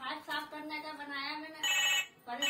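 Toy telephone playing its electronic sounds: a run of pitched notes, then a brighter ringing tone near the end.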